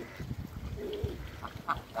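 Domestic ducks and geese calling: a low call about a second in, then a few short, sharp calls in the second half.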